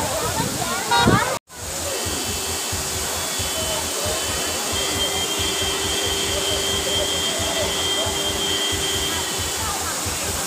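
Waterfall's steady rush with bathers' voices over it, cut off abruptly about a second and a half in. A steady rushing noise then resumes, with a faint held tone in the middle.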